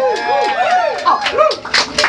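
A voice whooping in quick up-and-down yelps, then a few sharp cracks near the end, as a live band stops playing.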